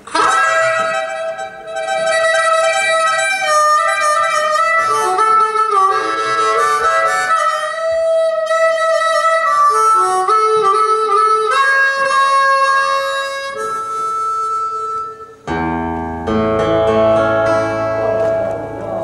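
Harmonica playing an unaccompanied passage of held notes and chords. About fifteen seconds in, the band enters with bass and guitar.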